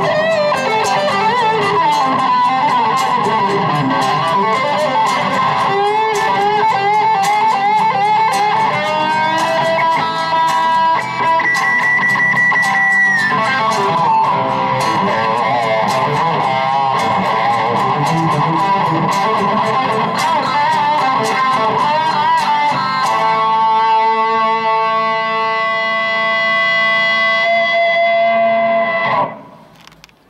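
Live Stratocaster-style electric guitar playing a melodic lead with many quick notes over strummed acoustic guitar. About two-thirds of the way in it settles on a long held, ringing chord, which stops suddenly shortly before the end, closing the song.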